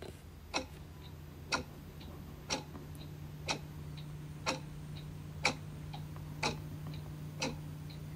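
Clock ticking steadily about once a second, with fainter ticks in between, over a low steady hum.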